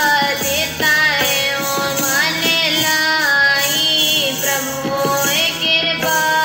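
Sikh kirtan: young voices singing a devotional hymn in a gliding melody over steady instrumental accompaniment, with light drum strokes.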